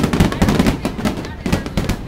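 Fireworks going off in a rapid, dense run of bangs and crackles, many per second, with voices underneath.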